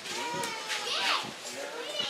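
Indistinct murmur of many voices from a seated crowd, with children's voices among them.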